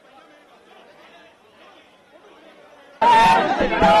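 Faint, muffled chatter of a crowd. About three seconds in it jumps suddenly to loud, close shouting voices of a crowd of men.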